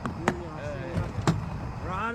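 Car doors shutting: two sharp knocks about a second apart, with a voice faintly between them.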